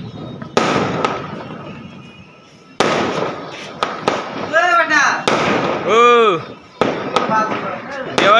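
Diwali firecrackers and aerial fireworks going off, with sharp bangs about half a second in and near three seconds, each trailing off into an echoing rumble, and smaller pops later. Midway, a voice calls out twice in long, rising-and-falling cries.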